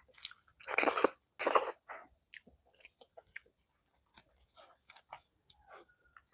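Close-miked chewing of rice and fried egg, with two louder wet bursts about a second in, then soft smacking and clicking mouth sounds.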